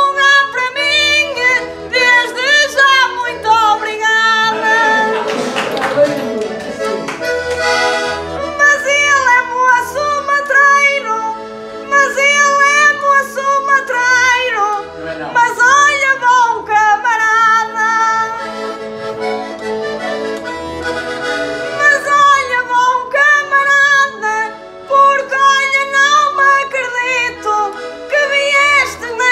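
Portuguese concertina playing a desgarrada accompaniment, with held chords and a bass note pulsing on the beat. A woman's voice sings over it.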